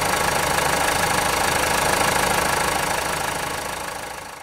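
Common-rail diesel engine idling steadily with its usual diesel knock, injector back-leak test vials fitted to the return lines. The sound starts to fade near the end.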